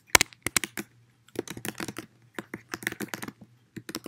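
Typing on a computer keyboard: a quick, irregular run of key clicks, with a short pause about a second in.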